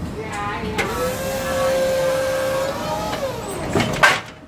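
Yale forklift's hydraulic pump motor whining at a steady pitch for about two seconds, then winding down in pitch as the lift control is released. A sharp clunk comes at the very end.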